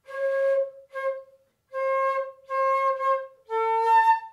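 Concert flute playing five short notes. The first is breathy, the next three sit on the same pitch with a cleaner tone, and the last is a step lower. It is a demonstration of how the angle of the air stream across the mouthpiece changes the flute's tone.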